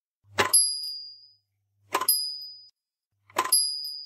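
Small bell on a motor-driven nativity bell-ringer figure, rung three times at a steady pace about a second and a half apart. Each ring starts with a short clack from the wooden lever-and-gear mechanism that pulls it, then rings on briefly.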